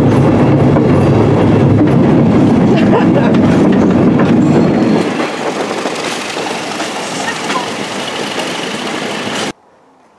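Train running along the track: a loud, low-pitched running noise that drops to a lighter level about halfway through, then cuts off suddenly near the end.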